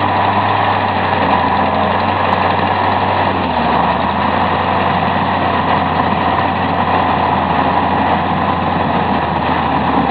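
Heavy six-wheel military truck's diesel engine running steadily under load as it drags a pontoon bridge section out of the water, its pitch dropping slightly about three and a half seconds in.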